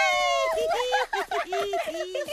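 High-pitched cartoon girls' voices cheering in chorus. It opens with one long rising shout, then a run of quick chanted syllables and two short held notes.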